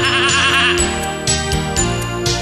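A sheep's bleat, a wavering, quavering "baa" that ends about a second in, over a steady backing track of nursery-rhyme music.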